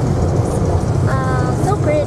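Steady low rumble of a car driving along a road, heard from inside the cabin. A brief voice sounds about a second in.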